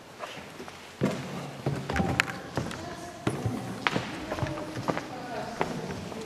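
Indistinct talk among a small group of people, with a few sharp clicks or knocks, the clearest about two seconds in and near four seconds.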